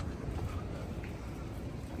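Steady low outdoor rumble with wind buffeting the microphone, and one brief click at the start.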